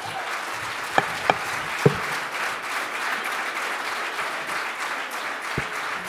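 Large hall audience applauding steadily. A few sharp knocks come about a second in.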